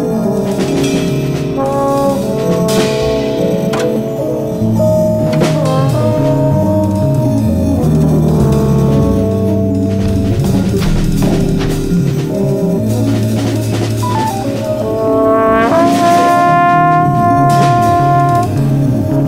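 Free-jazz music: brass lines, trombone-like, over drums and a moving bass. About fifteen seconds in, a note slides upward and is then held.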